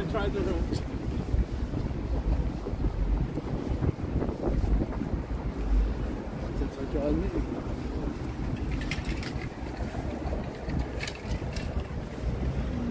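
City street ambience: a steady low rumble of traffic with wind buffeting the microphone, and voices of passers-by coming and going.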